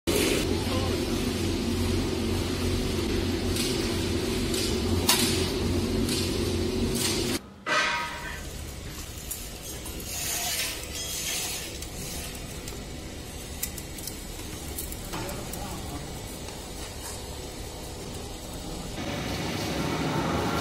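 Two-in-one sheet-metal roll forming machine running, set to form an angle profile from thin steel strip: a steady motor hum for the first seven seconds or so, then after a short break a quieter run with light clinks and rattles of the strip passing through the forming rollers.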